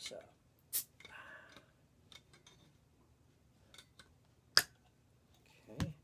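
Metal crown cap being pried off a glass bottle of carbonated soda with a bottle opener: a few clicks, with a short hiss about a second in. A sharp click, the loudest sound, comes most of the way through.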